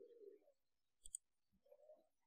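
Near silence, broken by a computer mouse double-click about a second in and faint low hums at the start and near the end.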